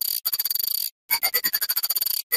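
Heavily distorted, sped-up Nokia phone startup jingle: a harsh, rapid buzzing stutter that cuts out for a moment about a second in, then comes back with a tone sliding downward.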